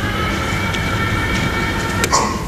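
Electric drive motor of a sliding lecture-hall blackboard running as the board panel moves, a steady whine over a low rumble that stops abruptly at the end.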